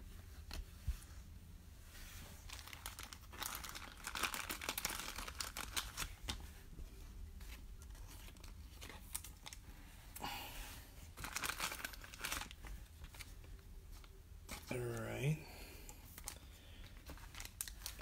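Plastic card sleeves and the foil wrapper of a 2019 Panini Mosaic basketball pack being handled, crinkling and rustling in scattered bursts with small clicks, as the wrapper is torn open.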